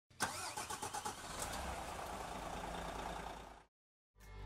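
An engine starting, with quick pulsing at first, then running steadily before fading out shortly before the end.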